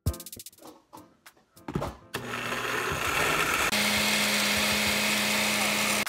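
Glass countertop blender starting up about two seconds in and blending almonds and water into almond milk: a loud, steady motor whir with a low hum that steps down to a lower pitch partway through.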